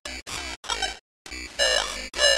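A synthetic text-to-speech voice, distorted and garbled by audio effects, chopped into short bursts. There is a brief silent gap about a second in.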